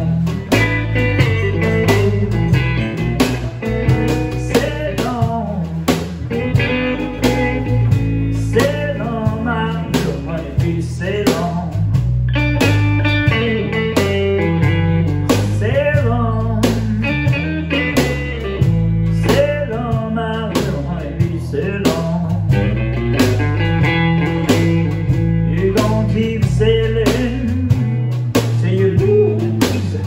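Live blues band: a Stratocaster electric guitar through a Fender Blues Junior amp plays over electric bass and a drum kit at a steady beat, with bending notes in the lead during a stretch of the song with no words sung.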